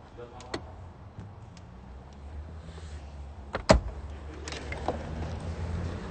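Belongings being gathered and handled inside a car: faint rustling and a few small clicks, then one sharp click or knock a little after halfway, all over a low steady hum.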